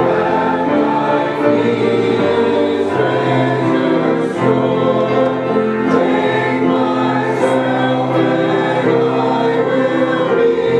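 A church congregation singing a hymn together, many voices holding each note and moving to the next about once a second.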